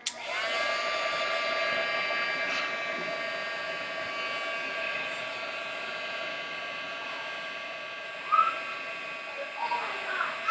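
Craft embossing heat tool switched on and running steadily, its fan motor whine rising as it spins up and then holding one pitch, as it heat-sets embossing powder. A brief louder sound comes about eight seconds in.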